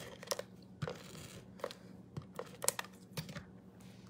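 Faint crafting handling sounds: a tape runner laying adhesive on a patterned paper strip, then paper strips and cardstock being moved about on a silicone craft mat, heard as scattered light taps and soft paper rustles.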